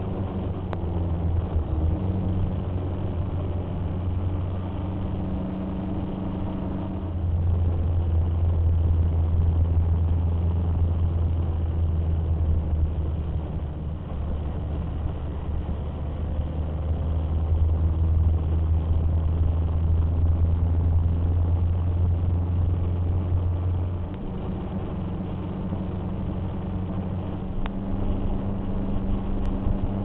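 Motorcycle engine running steadily while riding, heard from the moving bike, as a deep steady rumble that grows louder for a long stretch in the middle.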